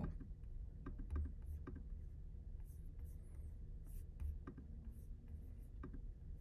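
Quiet room hum with a few faint, scattered clicks, most of them in the first two seconds and one more near the end.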